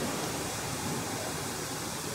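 Steady, even hiss of background noise in a pause between words, with no distinct sound standing out.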